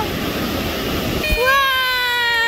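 Waves washing on the shore, and about a second in a person's long high-pitched held squeal lasting over a second and a half.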